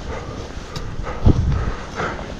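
Rushing wind on the microphone and the hiss of deep powder snow while riding downhill through it, with a heavy low thump a little over a second in.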